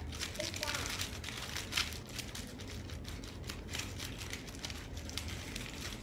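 Aluminum foil being crumpled and twisted by hand, a steady run of crinkles.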